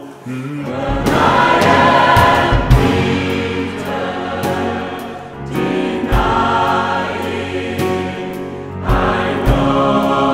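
Mixed choir singing slow sustained chords in three swelling phrases, breaking briefly about halfway and again near the end, with deep low notes from a piano underneath.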